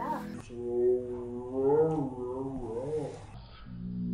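A young boy's long, wordless vocal sound with a wavering pitch, like a playful animal noise, over faint background music.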